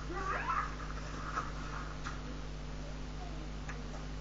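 Soundtrack of a played-back video, heard faintly: a brief high-pitched voice that rises and falls about half a second in, and a couple of faint clicks, over a steady electrical hum.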